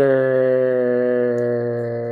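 A man humming one long, steady low note that sinks slightly in pitch.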